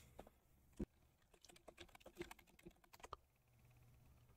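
Faint typing on a computer keyboard: a single click a little under a second in, then a quick run of about a dozen keystrokes.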